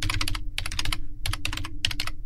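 Typing on a computer keyboard: quick, irregular runs of keystrokes with short pauses between them, over a faint steady low hum.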